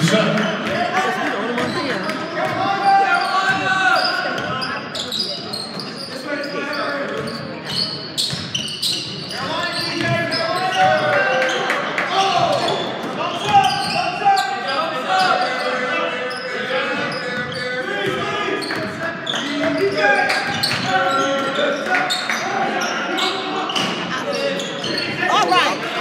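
A basketball dribbling and bouncing on a hardwood gym floor during play, with indistinct voices of players and spectators calling out throughout, echoing in a large gymnasium.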